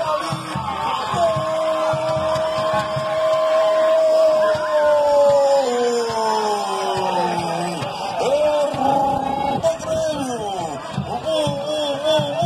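A voice holding one long, slowly falling note for about five seconds, then shorter rising and falling sung or shouted notes.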